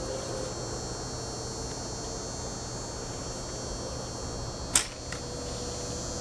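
Homemade hickory-and-bamboo Avatar-style bow loosing a Douglas fir arrow: one sharp snap of the released string near the end, followed by a fainter tick, over a steady low hum.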